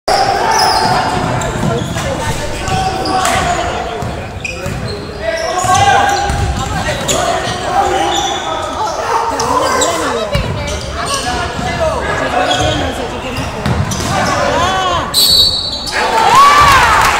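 Basketball dribbled on a hardwood gym floor during a game, with players' and spectators' voices echoing around the gymnasium.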